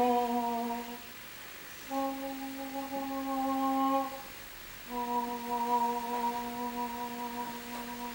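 A woman's voice singing three long held notes at nearly the same pitch, each steady with little wavering. The notes are separated by short breaths, the last held for about three seconds.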